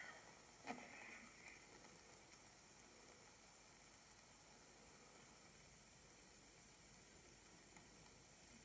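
Near silence: a faint steady hiss of room tone, with two brief faint sounds in the first second and a half.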